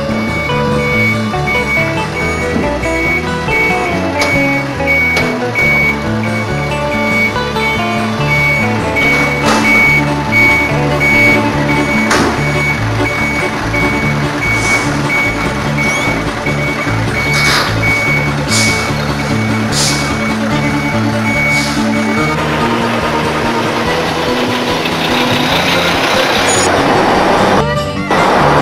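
Background music playing over a semi-trailer truck's reversing beeper, which beeps at a steady even pace as the truck backs up and stops about three-quarters of the way through.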